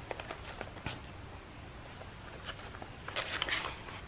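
Paper handling on a handmade journal: faint rustles and light taps as a card is pushed into a paper pocket, then a cluster of rustling about three seconds in as a page is turned.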